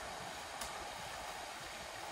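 Faint steady outdoor background hiss with no clear event, and one faint short tap a little over half a second in.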